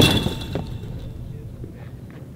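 A thrown baseball striking its target: one sharp crack with a brief metallic ring that dies away within about half a second, then low outdoor background.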